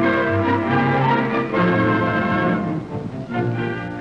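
Orchestral title music with strings and brass, swelling and then easing off about three seconds in.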